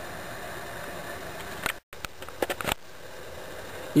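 Steady hiss. Just under two seconds in it breaks off in a sudden brief dropout, and a few light clicks and knocks follow before a quieter steady hiss.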